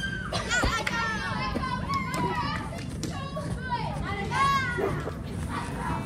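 A group of young girls shouting and squealing excitedly while playing, their high-pitched voices overlapping with no clear words.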